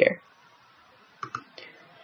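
A few soft computer mouse clicks a little past the middle, closing a window in the program.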